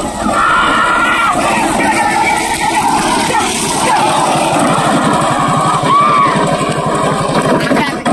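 Men shouting and calling out at a bullock-cart race, over a steady engine drone and rushing wind noise from a vehicle following close behind the cart.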